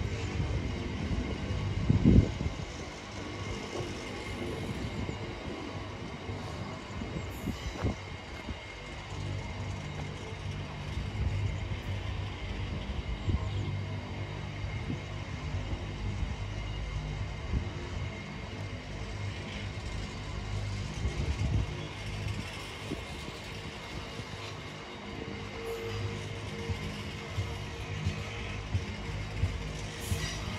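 Container freight train's wagons passing close by: a steady rumble of wheels on rail with a few sharp knocks, the loudest about two seconds in.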